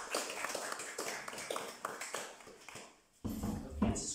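Small audience applauding, the clapping thinning out and fading over the first two or three seconds, then a sudden low rumble near the end.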